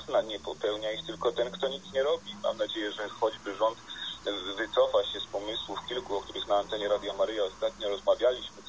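Continuous speech from a broadcast played in the room, with a steady high-pitched whine behind it.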